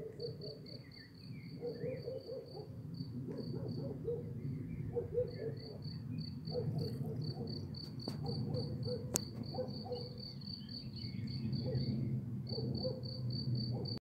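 A cricket chirping steadily in short, evenly spaced high chirps, about four a second, breaking off briefly twice. A faint low background rumble lies under it, and two sharp clicks come near the middle.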